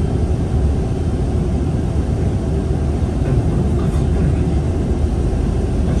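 Steady low rumble of a city bus in motion, its engine and road noise heard from inside the passenger cabin.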